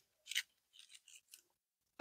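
Faint rustle of a paper bow's loops, made of perforated dot-matrix printer tear-off strips, being fluffed and handled between the fingers: one brief crinkle about a third of a second in, then a few soft ticks.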